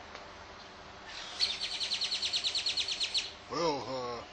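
A bird trilling: a rapid, even run of high chirps, about ten a second, lasting about two seconds. A man's voice starts near the end.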